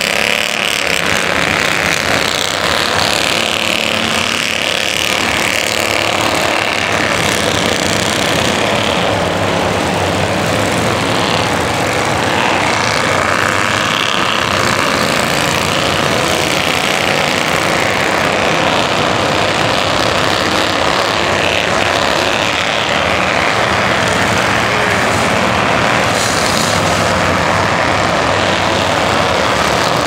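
Several Bandolero race cars lapping a short oval track, their small engines running at racing speed in a steady, continuous mix of overlapping engine notes.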